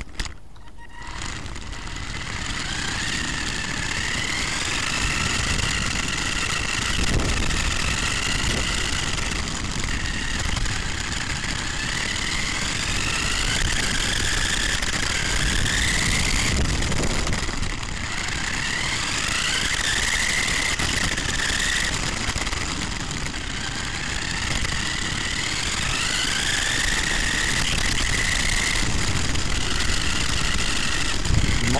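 Small electric motor and gearbox of a Mini Rock Climber toy RC truck whining, rising in pitch several times as it accelerates, over a steady rumble of its tyres on the rough car-park tarmac.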